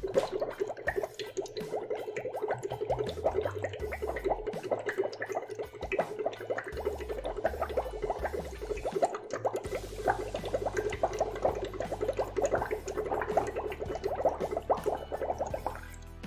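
Breath blown through a drinking straw into a small cup of water, bubbling continuously in a rapid, irregular patter; the bubbling stops near the end.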